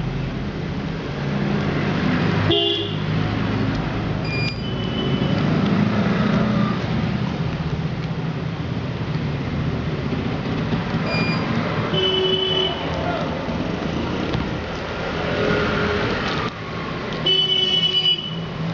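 Steady road-traffic noise with about five short vehicle horn toots scattered through it.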